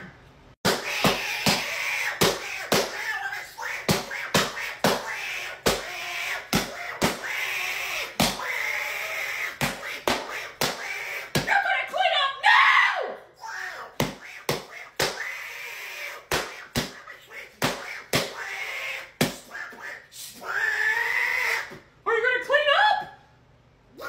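A rapid run of hits, about three a second, with a man's squawking Donald Duck-style voice crying out between them as the character is beaten.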